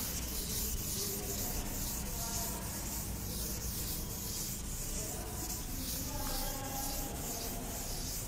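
A duster rubbed back and forth across a chalkboard, wiping off chalk writing in quick, even, hissing strokes.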